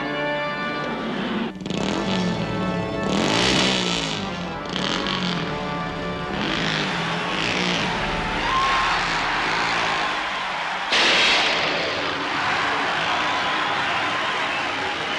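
Organ music breaks off about a second and a half in. A loud, noisy din of engines revving with wavering pitch follows, and a sudden loud surge comes about eleven seconds in.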